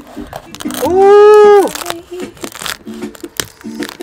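Cleaver cutting into the crisp roasted skin of a whole suckling pig, with scattered short crunching crackles. A long held vocal exclamation about a second in is the loudest sound, over quiet background music.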